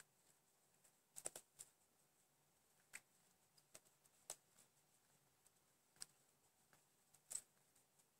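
Knitting needles clicking faintly and irregularly as stitches are worked, a handful of short ticks over near silence.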